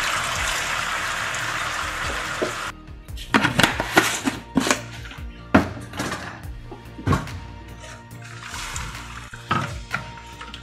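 Chicken stock sizzling as it is poured into a hot pan of tomato sauce, cutting off suddenly under three seconds in. After that there is background music with scattered sharp knocks.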